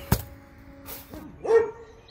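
A sharp smack just after the start as a hand strikes a hanging spiked basketball virus model. About one and a half seconds in comes a short pitched call that rises and falls, over faint background music.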